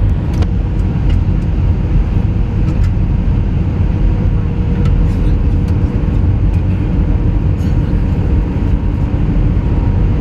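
Airliner cabin noise in flight: jet engines and rushing air make a steady, loud low rumble with a faint steady hum on top. A few small, faint clicks come through it.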